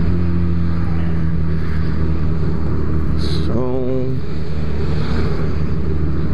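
Motorcycle engine running at a steady cruise while riding along a street, heard from the rider's position. A short wavering voice-like sound comes in about three and a half seconds in.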